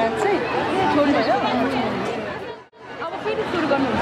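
Speech only: people talking in conversation, with crowd chatter behind. The sound drops out for a moment about two-thirds of the way through.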